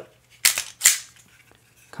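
KelTec P15 pistol's slide racked by hand to cock the striker: two sharp metallic clacks about half a second apart as the slide is pulled back and snaps forward, followed by a faint tick.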